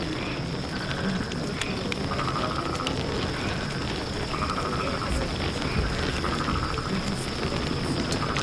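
Night-time animal chorus: short trilled calls repeating every second or two over a steady high drone, with a few faint crackles from a campfire.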